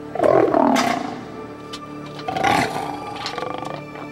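An African lion growling loudly twice, once at the start and again about halfway through, over background music.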